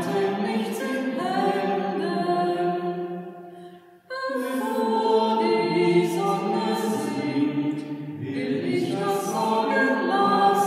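Voices singing a German evening hymn together, sustained sung lines with clear 's' consonants. The singing fades to a short break about four seconds in, then starts again on the next verse.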